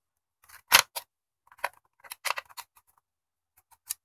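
Plastic clicks and knocks of two AA alkaline batteries being pushed into the spring-contact bays of a Viatek RE02 battery charger: one sharp click just under a second in, then several lighter clicks.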